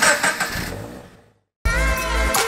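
Toyota GT86's FA20 flat-four engine breathing through a Cobra unequal-length de-cat manifold, its exhaust sound dying away over about a second. After a brief silence, intro music with a heavy bass beat starts near the end.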